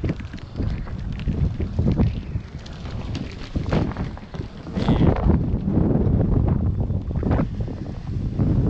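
Gusty wind buffeting a GoPro microphone: a rough low rumble that swells and drops, loudest a little past halfway.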